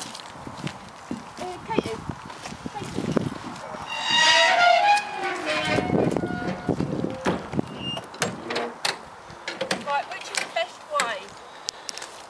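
Horsebox ramp and rear door being pushed shut by hand: a loud run of knocks and clatter in the middle, then scattered knocks, with voices around it.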